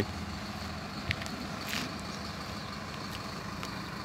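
Intercity coach bus engine idling with a steady low hum.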